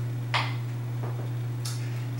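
Steady low electrical hum, with a brief soft hiss about a third of a second in and a fainter one near the end.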